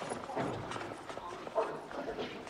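Film soundtrack of a scuffle among a group of men: short cries and calls from several voices over scattered knocks and shuffling of feet on a hard floor.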